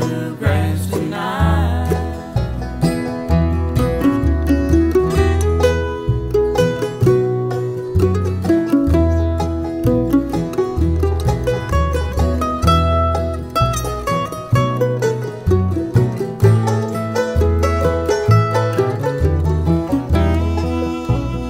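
Live bluegrass band playing an instrumental break: banjo, acoustic guitars, mandolin and upright bass, with steady bass notes under a lead melody that climbs about halfway through and then falls back.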